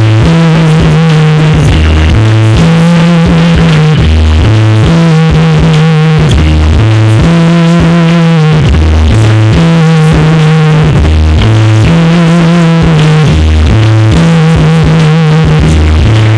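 Live nu-metal band playing at full volume: a heavy low riff that holds a note and then steps down in pitch, repeating about every two and a half seconds, with rapped vocals through a microphone on top. The recording is badly brickwalled, so the sound is crushed and constantly loud.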